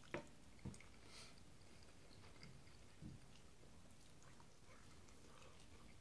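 A person eating barbecue chicken and rice: quiet chewing with a few short mouth sounds, the sharpest just after the start and another under a second in.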